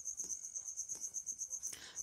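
A faint, high, rapidly pulsing trill in the background, steady throughout: a chirping insect such as a cricket. There is a short soft hiss near the end.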